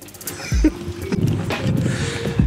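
Wind buffeting the microphone, a low rumble that builds from about a second in, over background music.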